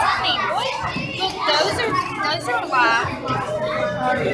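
Many young children's voices chattering and calling out over one another.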